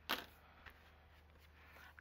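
A bone folder set down on a cutting mat: one sharp knock about a tenth of a second in, then a faint tick and quiet handling of cardstock.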